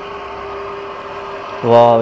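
Stainless-steel home screw oil press running steadily as it crushes flaxseed, a constant even hum with one steady tone.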